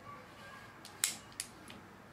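Plastic battery case for an iPhone 4 snapping shut around the phone: one sharp click about a second in, with a few lighter clicks as the pieces lock together.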